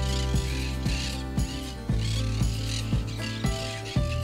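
Monk parakeets chattering in repeated short bursts, over background music with a low bass and a steady beat about twice a second.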